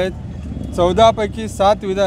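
A man speaking into news microphones. A short pause near the start lets a low steady rumble of street traffic come through.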